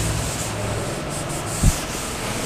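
A cloth duster rubbing across a chalkboard, wiping off chalk writing in steady strokes. One short soft thump near the end.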